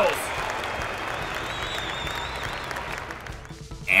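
Recorded crowd applause and cheering with a faint high whistle near the middle, fading out shortly before the end.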